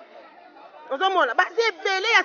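A woman speaking into a handheld microphone, starting about a second in after a short pause filled with faint background chatter.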